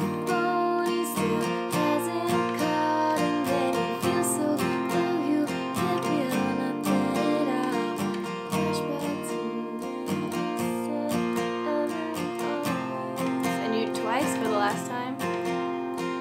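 Taylor steel-string acoustic guitar, capoed, strummed in a down-down-up-up-down-up pattern through a Cadd9–G–D–Em7 chord progression.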